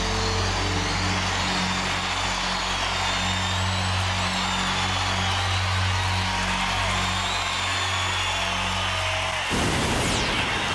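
A live rock band holding a final sustained low chord at the end of a song, over loud steady arena crowd cheering with whistles. About nine and a half seconds in the band cuts off, leaving the crowd noise.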